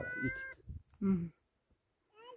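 A short, high-pitched animal call held steady for about half a second, then a brief spoken sound about a second in.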